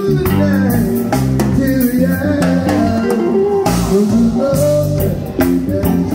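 Live band music: drum kit and djembe hand drum playing a groove under bass guitar and keyboard.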